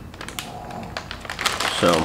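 Plastic wrapper of an Oreo cookie package crinkling as it is handled, a rapid run of small crackles and clicks.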